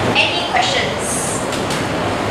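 Steady classroom background noise, a constant rumbling hiss, with faint murmuring from students and a few brief rustles of paper.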